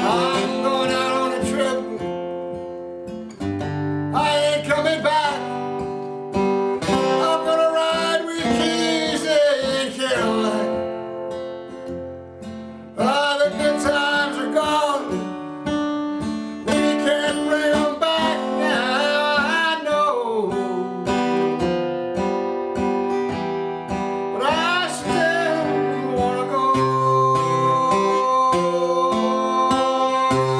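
A man singing with his own strummed acoustic guitar accompaniment, in sung phrases with short breaks between them.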